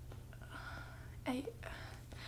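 A woman's voice in a pause: a faint breath, then one soft spoken word about a second in, over a low steady hum.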